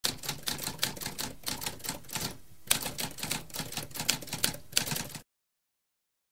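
Typewriter keys clacking, several strokes a second, with a brief pause about halfway through, then typing resumes and stops suddenly a little over five seconds in.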